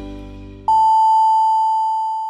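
Music fading out, then a single long, steady electronic beep starts sharply about two-thirds of a second in and holds: the radio's top-of-the-hour time signal marking 10 o'clock.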